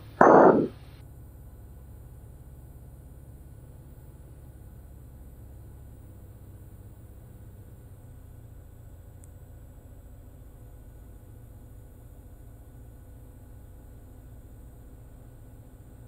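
Steady low drone of a Cirrus SR20's four-cylinder Lycoming engine and propeller on short final, heard faintly through the cockpit intercom. A short burst of sound comes right at the start.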